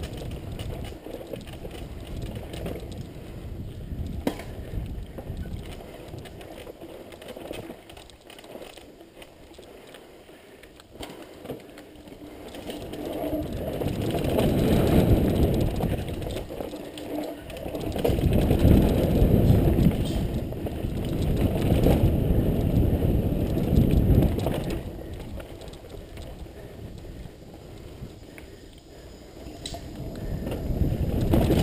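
Mountain bike ridden fast down a dirt singletrack: wind rushing over the camera's microphone and the bike rattling over bumps and roots. The wind rush swells in three loud surges through the second half as the speed picks up.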